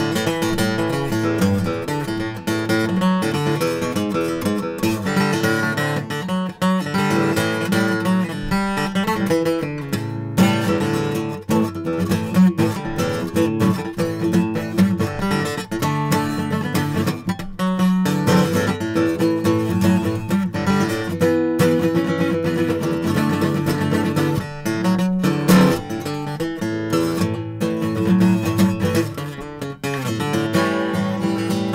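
Steel-string acoustic guitar played without pause, chords strummed in a continuous flow of notes.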